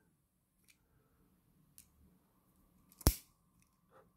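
Hand wire cutters snipping through the insulation of a scrap wire to strip its other end: a couple of faint ticks, then one sharp snip about three seconds in.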